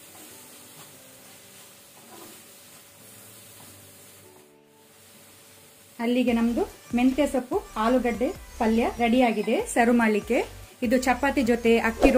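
A spatula stirring fried potatoes and fenugreek leaves in a steel kadai, with a faint sizzle, for about the first six seconds; then a woman's voice talks over it.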